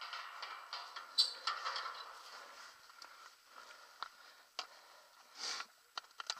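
Kona Cindercone mountain bike rolling downhill on tarmac: a steady tyre hiss with several sharp clicks and rattles from the bike.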